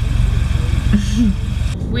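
Steady low rumble of a car heard from inside its cabin, with a short hummed vocal sound about a second in.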